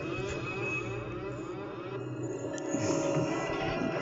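A mono film soundtrack, mostly music, playing continuously through home cinema speakers.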